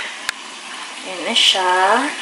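A steady hiss from a pot of vegetables simmering in coconut cream on the stove, with two small clicks at the very start. A short spoken filler sound comes near the end.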